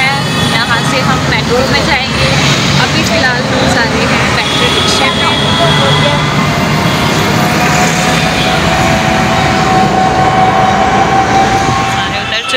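Auto-rickshaw ride: the engine and road traffic running steadily underneath, with voices over them.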